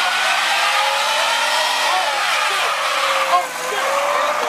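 Car doing a burnout: its spinning tyre squeals steadily over the engine held at high revs, the squeal's pitch wavering slightly and dipping briefly about three and a half seconds in.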